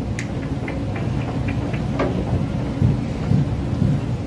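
A low, steady rumble of room noise with a few faint clicks scattered through it.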